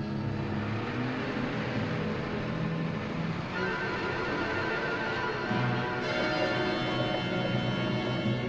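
Tense orchestral film score of sustained notes, swelling and adding higher notes about halfway through, over the low steady hum of an idling car engine.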